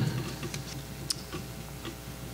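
Room tone of a microphoned meeting room: a steady low hum with a few faint, scattered clicks.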